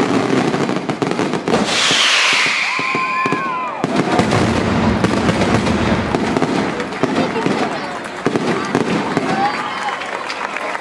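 Aerial fireworks barrage: dense rapid bangs and crackling, with a loud falling hiss and whistle lasting about two seconds, a couple of seconds in.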